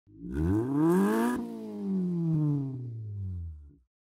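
Car engine revving up for about a second and a half, with a rush of hiss at the peak, then winding down in pitch and fading out just before the end. It is an intro sound effect.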